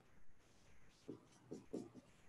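Dry-erase marker writing on a whiteboard: about four faint, short strokes as a word is written out.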